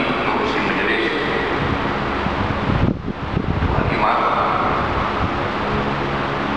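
A man speaking through a microphone and public-address system, with a steady low rumble of room noise under his voice. About three seconds in, the voice briefly gives way to a low rumbling burst.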